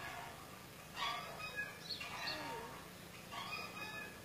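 Faint chicken calls: three short clucking calls about a second apart.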